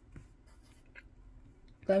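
Pencil writing a digit on a workbook page: faint scratching and light taps of the lead on paper.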